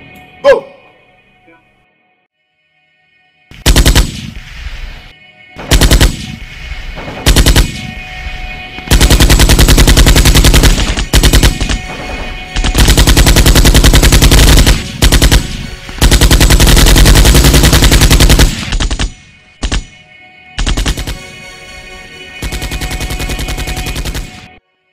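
Automatic gunfire in repeated bursts: a few short bursts, then several long sustained bursts lasting two to three seconds each, with brief gaps between them.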